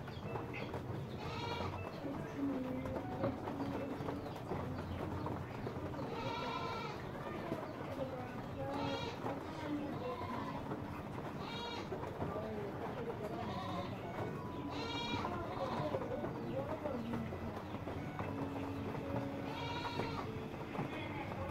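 An animal bleating in short, wavering calls, about six of them spaced a few seconds apart, over a low murmur of background voices.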